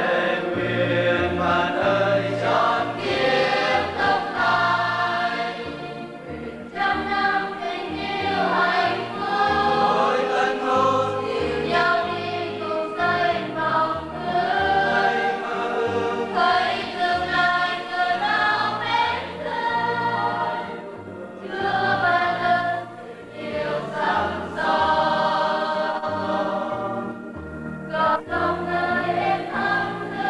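Church choir of men and women singing a sacred song in unison over an electronic keyboard, whose low bass notes change in even steps under the voices.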